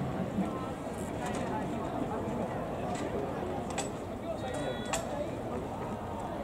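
Open-air stadium background: faint distant voices and chatter at a steady low level, with a few soft clicks.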